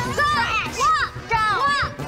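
High-pitched voices of girls chattering and calling out over background music.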